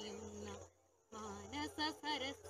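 Singing: a held sung note trails off about half a second in, a short silence follows, and the singing starts again.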